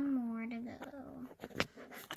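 A child's voice drawn out in a whiny tone for the first half second or so. Then a few short, sharp clicks: plastic toy horse figures being tapped and moved on a hard wood-grain floor.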